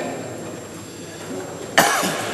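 A single sharp cough close to the microphone near the end, after about a second and a half of low background noise.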